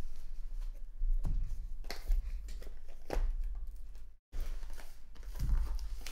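Trading cards being handled and flipped through on a table: soft slides and rustles, with a few sharper taps about one, two, three and five and a half seconds in, over a low steady hum.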